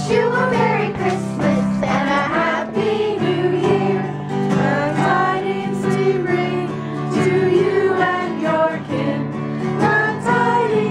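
A small group of carolers singing a Christmas carol together, with a guitar accompanying them.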